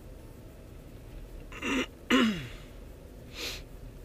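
A person sneezing once, a loud two-part "ah-choo" with the voice falling in pitch at the end, then a short breath about a second later.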